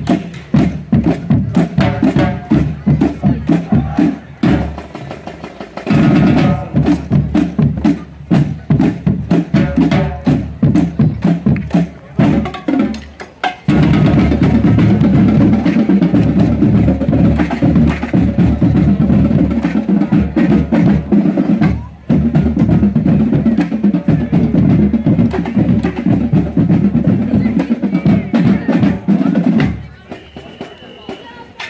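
Marching band drumline playing a marching cadence of rapid drum strokes. The playing pauses briefly twice and then turns denser and nearly continuous about halfway through.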